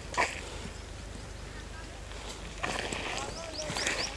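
Outdoor nursery ambience with faint, indistinct voices and a sharp click about a quarter second in. Near the end a bird starts a rapid series of short rising chirps, about seven a second.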